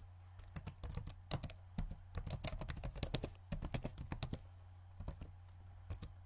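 A quick, uneven run of light clicks and taps over a steady low hum, thinning to a few scattered clicks after about four seconds.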